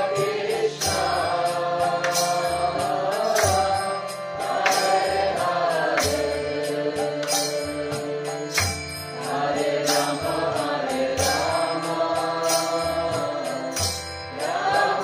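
Kirtan: a group of voices chanting a mantra together over a steady held drone, with a drum and cymbal strike beating roughly once a second.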